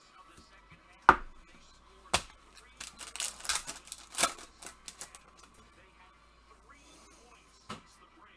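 Foil wrapper of a Mosaic football card pack handled and torn open in gloved hands: a sharp click about a second in and another a second later, then a run of crinkling from about three to four and a half seconds in.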